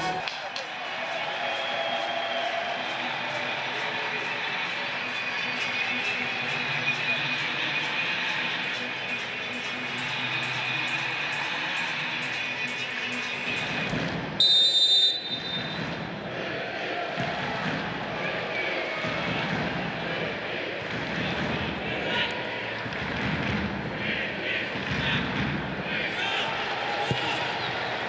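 Football stadium crowd noise. About halfway through, the referee's whistle blows once, loud and brief, to start the match.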